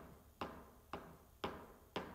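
A golf ball swinging on a string lightly clips the top of a golf tee on each pass: four short, sharp ticks about half a second apart. The ticks show that the swing bottoms out just before the tee and catches it on the way up.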